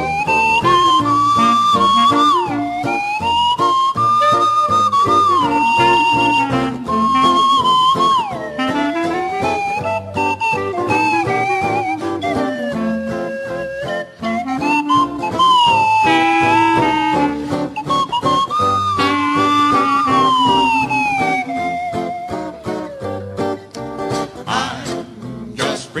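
A slide whistle plays the melody. Its notes are held, then glide smoothly up and down from one to the next, over strummed acoustic guitar and string bass in an old-time, hillbilly jazz arrangement.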